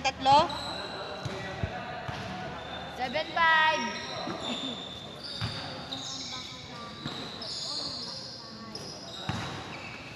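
A basketball bouncing on an indoor court floor a few times, with players' shouts and calls in a large gym.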